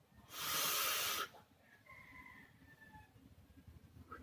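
A vaper's breath on a single-battery tube mechanical mod: one loud airy hiss about a second long near the start, then faint thin whistling tones.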